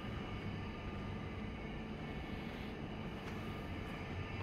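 A steady low rumble of background noise with no distinct events, its level unchanging throughout.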